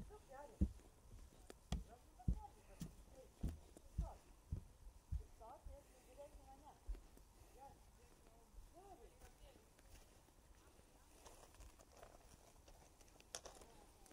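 Bare feet stepping along a wooden plank boardwalk, a dull thud with each step, roughly two a second at first, then softer after about five seconds.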